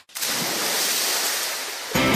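A steady hiss of noise, starting abruptly after a split second of silence and easing off slightly near the end.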